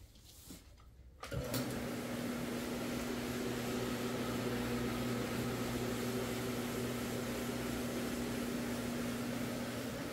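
A 175 rpm rotary floor machine switches on a little over a second in, then its motor runs with a steady low hum while its pad scrubs the carpet.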